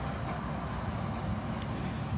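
Steady low outdoor background rumble with no distinct event.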